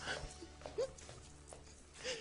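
Quiet studio room tone with a faint low hum and a brief, faint voice-like sound a little under a second in.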